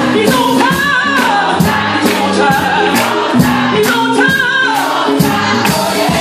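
Live gospel music: a church choir singing with a lead singer on a microphone, backed by an electronic keyboard and a steady beat of drums and hand claps.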